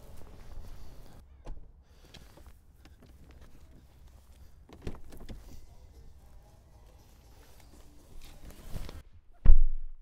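Mercedes EQS power tailgate closing under its motor and latching with a click about a second and a half in. Car-door handling follows, ending in a low door thump, the loudest sound, near the end.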